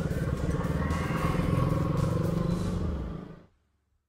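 Motorcycle engine running steadily while riding, with music over it; both fade out about three seconds in.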